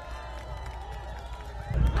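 Outdoor rally ambience: faint crowd and street noise with a low, steady rumble that grows louder near the end.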